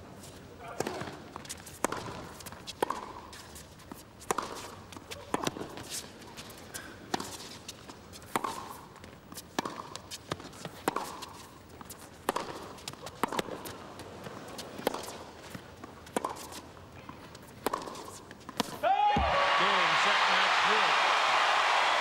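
Tennis rally: the ball struck by rackets and bouncing on the court about once a second, with a player's grunt on some of the hits. About nineteen seconds in the rally ends and the crowd breaks into loud cheering and applause for the winning match point.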